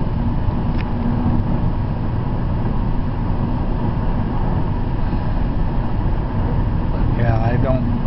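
Steady road and engine noise of a car cruising at highway speed, heard from inside the cabin, with a low hum under it. A brief bit of a man's voice comes near the end.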